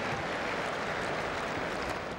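Tennis crowd applauding between points, a steady even patter.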